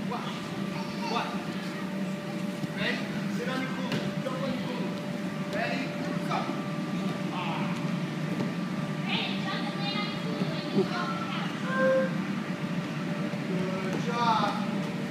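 Steady hum of an inflatable air-track mat's blower, with scattered high-pitched voices and calls of small children over it.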